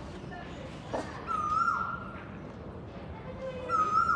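An animal call sounding twice, a couple of seconds apart: each a clear tone held steady and then dropping away at the end, over a steady low background hum.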